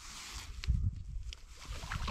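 Low rumble and soft handling noise as tip-up line is hand-lined up through an ice hole with a fish on, with a few light clicks.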